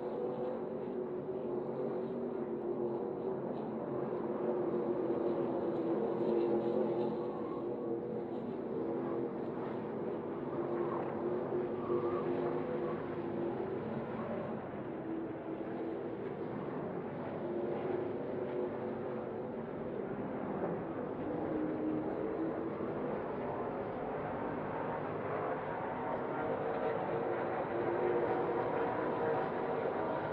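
NASCAR Craftsman Truck Series race trucks' V8 engines running at racing speed on a road course, their pitch rising and falling as they brake and accelerate through the corners.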